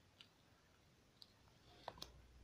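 Near silence with three faint, brief clicks: one just after the start, one past a second, and a slightly louder one just before the end.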